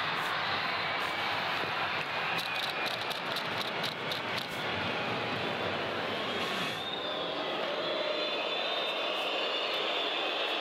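Steady crowd noise in an ice hockey arena during a shootout attempt, with a run of sharp clicks about two to four and a half seconds in.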